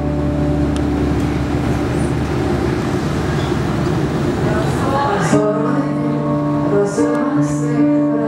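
Stage piano playing held chords over deep bass notes, moving to a new chord about five seconds in. A woman's singing voice comes in over the keyboard in the second half.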